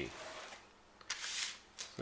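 Carded lure packaging rustling and clicking as it is set down and slid into place on a wooden tabletop, a short papery rustle with a couple of light clicks about a second in.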